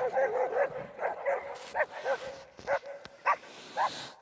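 A dog barking and yipping in quick, short, pitched calls, about three a second.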